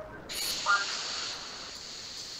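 A steady hiss of recording background noise, with a brief short vocal sound about three-quarters of a second in.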